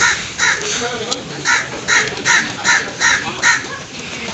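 A crow cawing over and over in a rapid series of short, loud caws, about two a second.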